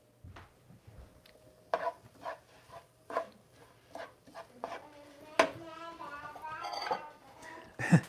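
Scattered light clinks and knocks of dishes and utensils in a home kitchen, irregularly spaced, some ringing briefly. A soft voice is heard faintly in the second half.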